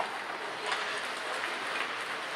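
Echoing ice-arena noise during a hockey game with play away from the net: a steady hiss of skates on ice and general rink din, with a brief sharp click at the start.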